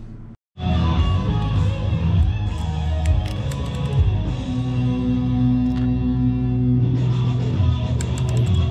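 Rock music with guitar, cutting in abruptly after a brief dropout about half a second in.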